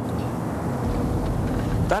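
Steady low rumble of a car driving along a road, heard from inside the car, growing a little stronger about half a second in.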